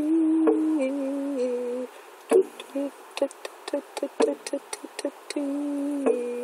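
A woman humming two long wordless notes, each stepping down in pitch, one at the start and one near the end. Between them a drum beats steadily, about three beats a second.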